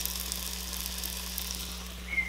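Freshly air-fried breaded chicken breasts sizzling in the hot air fryer basket, with light crackles over a steady low hum.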